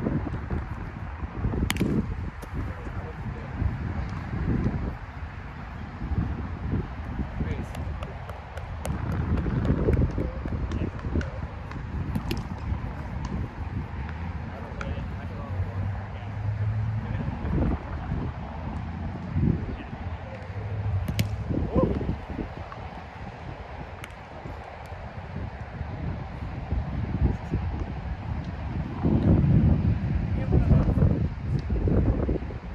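Wind rumbling on the microphone, with players' voices and several sharp smacks scattered through it from a roundnet ball being hit and bouncing off the net.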